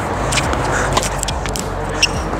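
Tennis ball being struck and bouncing during a rally: a few sharp pops, about half a second in, about a second in and again at the end, over steady background noise.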